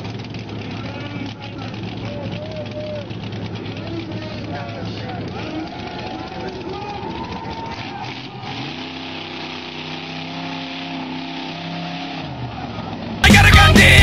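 Off-road buggy's engine running and revving, with people's voices over it; from about the middle it holds a steady high rev for around four seconds. Loud rock music cuts in abruptly about a second before the end.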